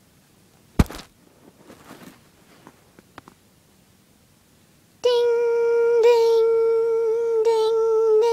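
A single sharp knock about a second in. About five seconds in, a voice starts holding one steady high humming note, with brief wavers twice, standing in for a tornado warning bell.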